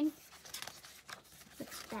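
Paper rustling as a hand handles and lifts a page of a thick photo book: a few short rustles.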